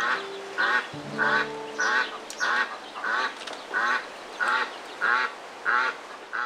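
A duck quacking in an even series, about three quacks every two seconds. Held musical notes sound underneath for the first two seconds.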